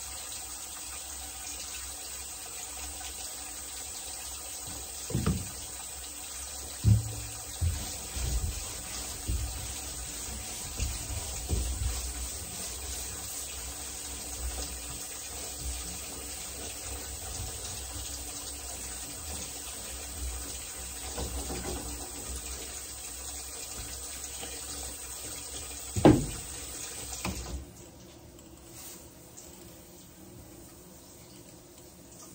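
Water running steadily from a faucet into a stainless steel sink, with a few sharp knocks, the loudest near the end. The water stops shortly before the end.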